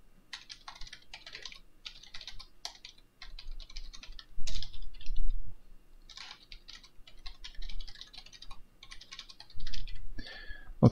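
Typing on a computer keyboard: quick runs of keystrokes with short pauses between them, and a couple of heavier, louder strikes about halfway through.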